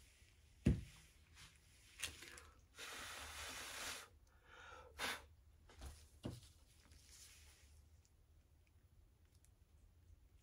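Faint handling noises on a work table: a soft knock under a second in and a few light clicks, with a breathy hiss lasting about a second in between.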